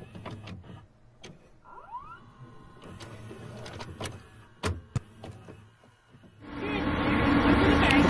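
VCR sound effect of a videotape deck starting to play: the tape mechanism whirs and clicks, with a short rising whine about two seconds in and two sharp clicks shortly before five seconds. Late on, a steady background noise fades up.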